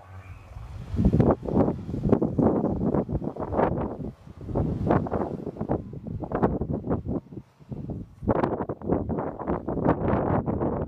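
A 2003 Ford Escape's V6 engine runs under load as the SUV climbs through snow, its wheels throwing up snow. Wind buffets the microphone in irregular gusts over it.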